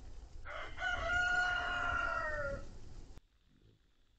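A rooster crowing once: one long call lasting about two seconds that dips slightly at the end, over a low background rumble. The audio cuts off abruptly about three seconds in.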